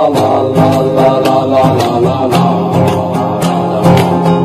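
Background music: a plucked string instrument over frequent percussion strikes.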